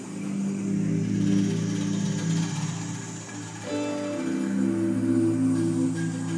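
A live Latin band playing an instrumental, led by plucked guitars over bass, with held notes that change a little past the middle.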